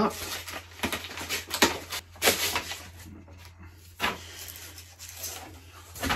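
A kraft cardboard mailer envelope being pulled and torn open by hand: paper tearing and rustling in several short bursts, the loudest about 1.5 and 2 s in.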